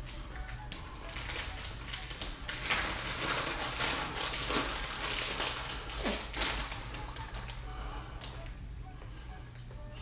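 Plastic bag of shredded mozzarella crinkling and rustling in a string of irregular bursts as cheese is shaken out of it, dying down after about seven seconds.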